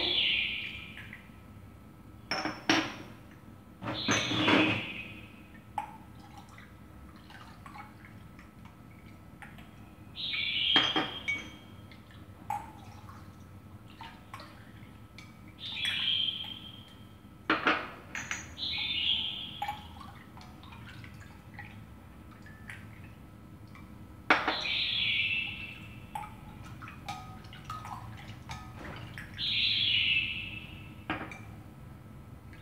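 A metal ladle dipping into a glass bowl of milk-and-yogurt mixture and pouring it into small glass jars: sharp clinks of metal on glass and short pours of liquid, repeated several times a few seconds apart as each jar is filled.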